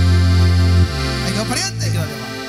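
Fara-fara band of accordion, sousaphone and guitar holding a loud final chord at the end of the song; the low sousaphone notes drop back about a second in while the chord rings on, and a brief voice is heard near the end.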